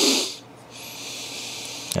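A short, loud breath close to the microphone at the start, followed by a faint, steady hiss.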